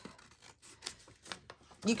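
Scissors snipping through paper: a few short, separate cuts as the edges of a folded envelope are trimmed off.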